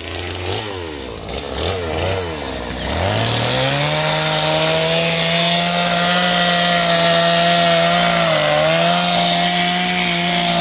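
STIHL chainsaw engine revving unevenly at low speed for about three seconds, then rising to steady full throttle as it cuts through old wooden deck boards. Its pitch dips briefly near the end.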